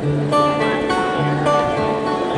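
Acoustic guitar coming in at the start and picking the song's instrumental intro. Ringing higher notes sound over a low bass note that returns about every second and a quarter.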